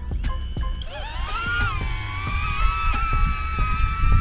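DJI Neo's small propeller motors spinning up about a second in: a rising whine that settles into a steady high-pitched hover whine as the drone lifts off. Low wind rumble on the microphone throughout.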